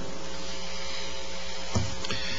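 Room tone in a pause between spoken sentences: a steady hum with a few faint held tones and a light hiss. There is one brief soft bump about three-quarters of the way through.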